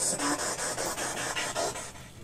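Spirit box sweeping through radio stations: hissing static chopped into rapid, even pulses, with faint broken voice fragments that the investigators hear as the answer 'Next to Jack'.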